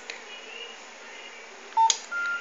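A short electronic beep, about a fifth of a second long, near the end, ending in a sharp click as the board's relay switches the bulb off on the received 'bulb off' SMS command.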